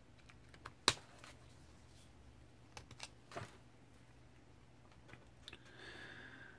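Alcohol marker working on a colouring-book page: faint taps and clicks of the marker and of markers being handled, the sharpest about a second in, with lighter ones around three seconds and near the end.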